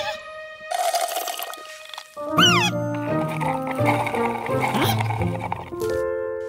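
Cartoon music and comic sound effects: a short swish about a second in, a rising-and-falling swoop a moment later, then a bouncy tune with bass notes.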